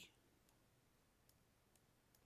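Near silence with a few faint, separate clicks of a computer mouse button as pen strokes are drawn.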